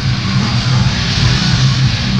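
Grindcore band playing live: electric guitar and bass riffing over drums in a dense, loud wall of sound, with the low riff notes changing several times a second.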